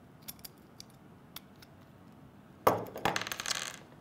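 Small metal clicks as hex bolts are worked loose from a target archery sight's dovetail mount, then, nearly three seconds in, a louder metallic clatter lasting about a second as the freed bolt and sight parts are set down on a wooden table.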